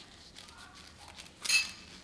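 Faint clicks from handling a small plastic trigger-spray bottle, then one short hissing squirt of patina solution about one and a half seconds in. The nozzle is set so that it shoots a stream rather than a mist.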